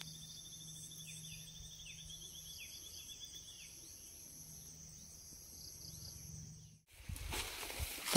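Steady chorus of insects, high-pitched buzzing and pulsing trills with a few short falling chirps. It cuts off abruptly near the end and gives way to a brief burst of rustling noise.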